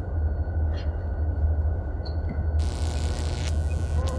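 A steady low rumble, like a machine or power hum, with a hiss joining it about two and a half seconds in.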